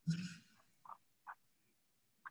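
A short, soft, breathy vocal sound from a person right at the start, then a few faint, very short blips.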